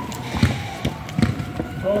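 A few dull thuds of players' feet and the ball on a hard outdoor football court, irregularly spaced, with a man's short "oh" near the end.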